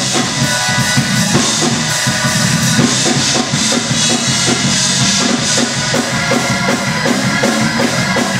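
Loud live church praise music driven by a drum kit playing a fast, steady beat over sustained instrument tones.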